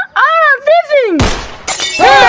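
An excited voice, then about a second in a sudden crash of shattering glass that fades quickly, followed by loud, harsh shouting.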